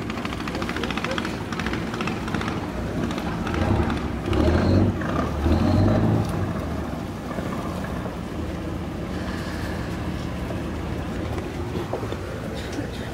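Boat engine running steadily at a harbour, with people's voices in the background; the low engine sound grows louder for about two seconds near the middle.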